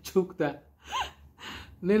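A man's voice in short broken bits: brief syllables and a sharp intake of breath, with a brief rising-and-falling vocal sound about a second in.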